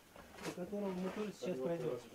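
A person speaking, the words not made out.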